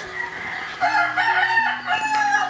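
A game rooster crowing: one long, wavering crow that starts about a second in.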